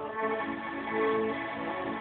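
Piano accordion playing sustained chords in a steady rhythm, with no singing.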